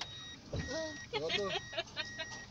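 A car driving, heard from inside the cabin: a low, steady engine and road rumble, with a voice talking over it from about half a second in.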